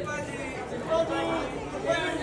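Overlapping chatter of several photographers talking and calling out over one another.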